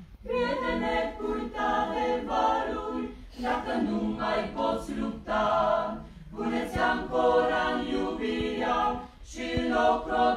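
A small mixed choir of men's and women's voices singing unaccompanied, in phrases of about three seconds with short breaks for breath between them.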